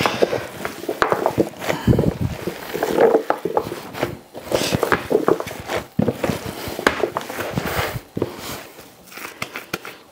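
Gloved hands kneading and squeezing ground sausage meat with cubed white cheddar in a plastic tub, making irregular wet squishing and slapping sounds.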